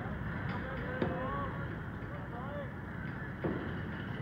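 Faint voices of players and spectators calling out over a steady low rumble of wind and outdoor noise at a baseball field, with a couple of soft knocks.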